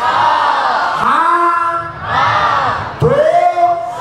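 A man singing into a microphone in long, drawn-out phrases of about a second each, the notes sliding in pitch, with a crowd of voices singing along.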